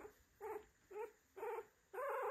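Week-old F1B mini goldendoodle puppy squeaking faintly three times, short high calls about half a second apart.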